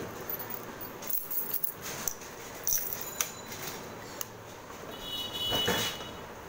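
A bunch of motorcycle keys jangling and clicking as a key is fitted into the ignition switch and turned on. Near the end there is a brief high-pitched beep as the instrument panel comes on.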